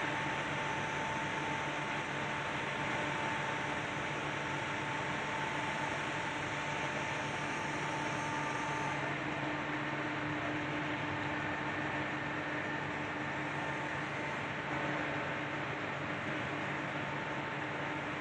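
Electric hydraulic power pack running steadily, a motor-and-pump hum and whine with several steady tones, while it drives the crane's boom and grab. Some of its tones drop out or shift about halfway through.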